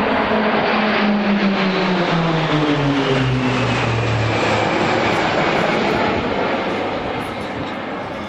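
A formation of Pilatus PC-9/A single-engine turboprop trainers flying past overhead. The steady propeller drone drops in pitch midway as the aircraft pass, then slowly grows quieter as they climb away.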